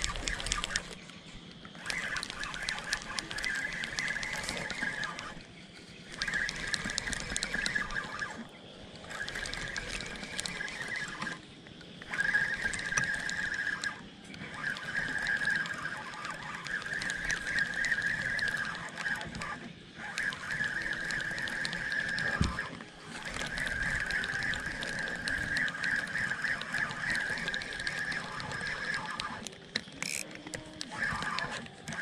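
Spinning fishing reel being cranked: a fast clicking whirr in spells of a few seconds, with short pauses between them.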